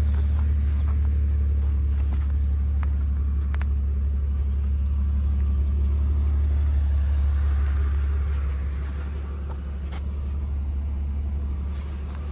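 A 2004 Ford Taurus wagon's 3.0-litre V6 idling steadily, a low, even hum, with a couple of faint clicks and a slight drop in level after about eight seconds.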